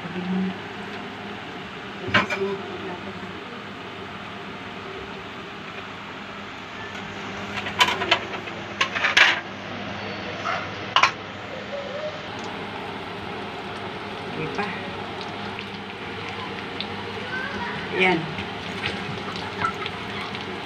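Breaded corned beef pies frying in hot oil in a pan, with a steady sizzle. A few sharp clicks of a utensil against the pan come through it: one about two seconds in, a cluster around eight to nine seconds, and another near the end.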